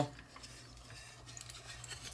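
Faint clicking and rubbing of hard plastic hinged panels being unfolded by hand on a large transforming robot figure, with a few small clicks in the second half.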